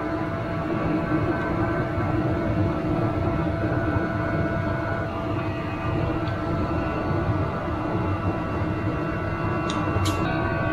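A steady droning hum: several held tones over a low rumble, unchanging throughout, with no distinct tool sounds.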